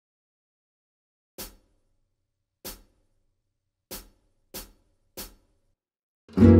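Count-in clicks at 95 bpm: five short, sharp ticks, the first two slow and about a second and a quarter apart, then three at the quicker beat, leading into the tune.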